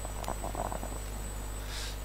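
Press-room tone: a steady low electrical hum with faint, indistinct off-microphone murmuring and a small click about a quarter second in.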